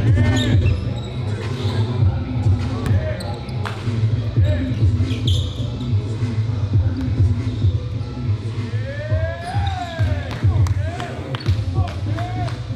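A basketball being dribbled on a gym's hardwood floor, with sharp bounces and shoe squeaks, under onlookers' voices and a steady low beat.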